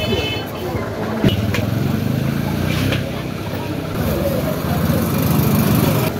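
Busy outdoor street-market ambience: a vehicle engine running nearby under indistinct background voices, with one sharp knock about a second in.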